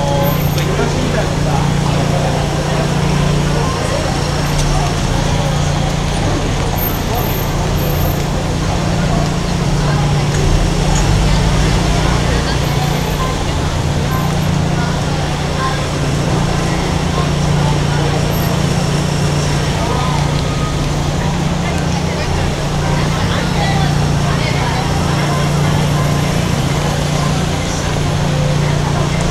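Busy city street ambience: many people talking over one another, with cars passing close by and a steady low hum underneath.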